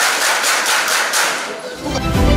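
A roomful of students clapping: many hands beating together in dense, irregular applause that fades in the last moments as music begins.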